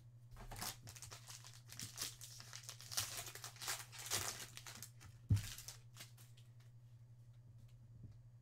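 A foil trading-card pack being torn open and crinkled by hand, with a single sharp thump a little over five seconds in.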